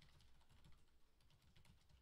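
Faint, quick typing on a computer keyboard: a steady run of light keystrokes, several a second.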